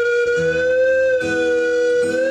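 A dog howling along to guitar music: one long, steady howl that rises slightly in pitch, over chords that change every second or so.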